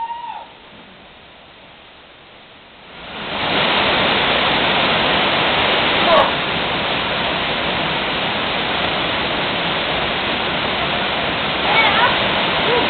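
Rushing water from a waterfall pouring into a rock pool: a steady hiss, faint for the first three seconds, then swelling and holding loud. Short human calls break in at the start, about six seconds in and near the end.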